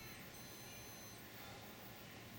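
High-pitched electronic beeps: one ends just after the start, and a second one follows and lasts just under a second, over faint background hiss.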